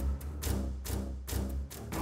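Dramatic background score with repeated low drum hits, about three a second.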